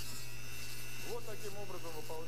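Mini drill running through a flexible shaft, its grinding stone held against the steel jaw tip of needle-nose pliers to regrind a worn tool: a steady motor hum and high whine, the pitch wavering slightly as the stone bears on the metal.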